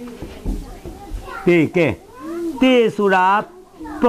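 Speech: a voice talking, after a quieter pause in the first second or so.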